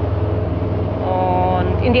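Steady low engine drone of a moving vehicle, heard from among its passengers, with a brief held voice sound about a second in before speech resumes near the end.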